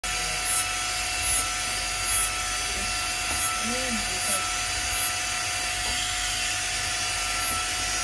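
Jeweller's rotary handpiece running with a steady high whine while its burr works the surface of a gold bracelet, with light scraping as the bit touches the metal.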